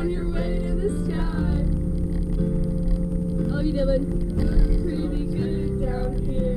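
Karaoke backing track playing through the party van's speakers, its chords shifting near the end, with passengers' voices over it.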